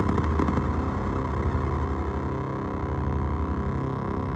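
Korg Volca Keys synthesizer played through an Iron Ether FrantaBit bitcrusher pedal: a steady low drone of several stacked tones, with a brief grainy crackle about half a second in while the pedal's knobs are being turned.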